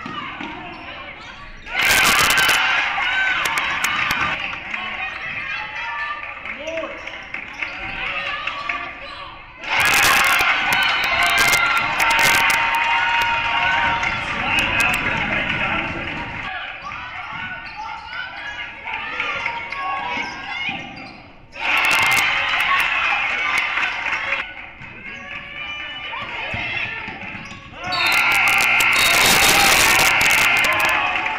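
Game sound from a high school basketball gym: the ball bouncing and voices from the court and stands. Four times, the crowd noise surges suddenly and loudly.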